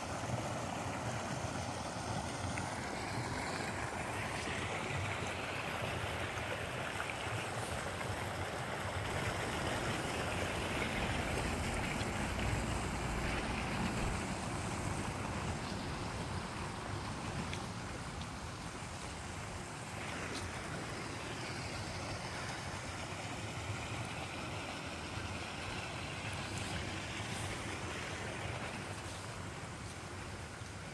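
Steady rush of water pouring over a small spillway in a landscaped drainage channel. It swells a little about a third of the way in and eases somewhat in the second half.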